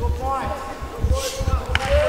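People shouting, their voices rising and falling in pitch, over irregular dull low thuds.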